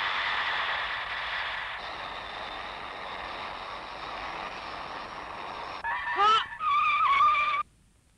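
Cartoon sound effect of a small flying scooter: a steady rushing hiss for about six seconds, then a brief wavering, warbling tone that cuts off suddenly near the end.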